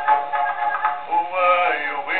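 A horn gramophone playing an acoustic-era 78 rpm record of a music hall song, a male singer with orchestra. The sound is thin, with no treble.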